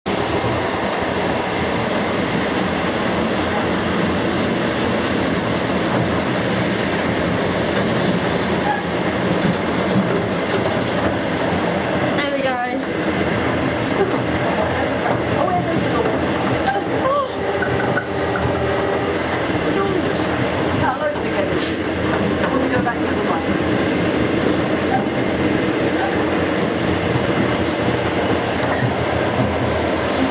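A moving passenger train heard from inside the carriage: a steady, loud running noise of the wheels on the track that carries on without a break.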